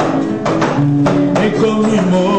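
Live Christian gospel music: an acoustic guitar picking notes under a man's singing voice.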